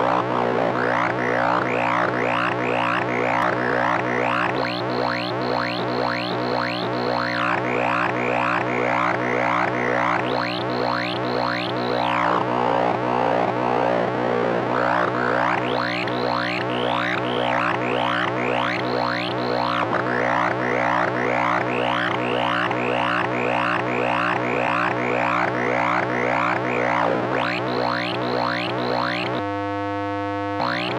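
Synthesized robotic radio-interference sound effect: a steady low electronic drone under rapid, repeating chirps that sweep up and down in pitch.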